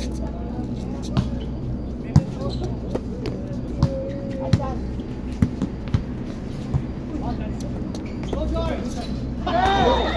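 Volleyball rally: a string of sharp smacks as players hit the ball with their hands and forearms, over steady crowd chatter, with voices shouting near the end.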